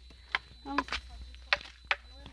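Footsteps on a stony dirt road: three sharp, irregular taps, one about a third of a second in and two near the end, with a short bit of voice in the middle.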